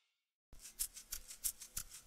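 Silence for about half a second, then a quick run of light, sharp clicks, about six a second.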